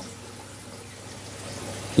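Steady sound of water circulating in a running saltwater reef aquarium, an even wash of moving water with no distinct splashes.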